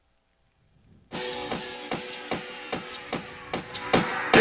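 Near silence, then electronic dance music with a steady fast beat starts abruptly about a second in.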